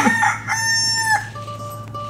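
A rooster crowing once, the cue for morning: a short rising start, then one long held note that breaks off a little past the first second.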